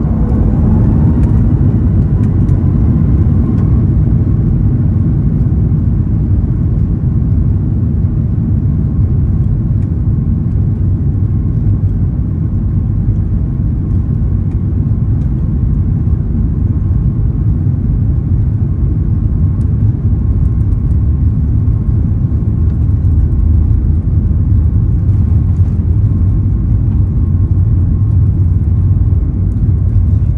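Boeing 737 MAX 8 airliner's CFM LEAP-1B engines, heard from the cabin, spooling up to takeoff thrust with a rising whine in the first couple of seconds, then running loud and steady with the low rumble of the takeoff roll.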